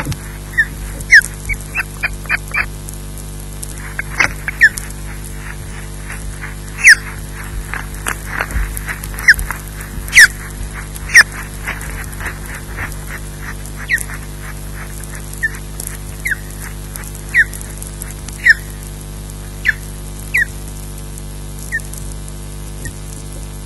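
Osprey calling: a long series of short, high, whistled chirps, each falling in pitch. They come in quick runs in the first half and more spaced out later, over a steady low hum.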